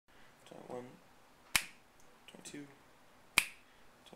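Two crisp, sharp snaps of a finger flicking against a peach, about two seconds apart.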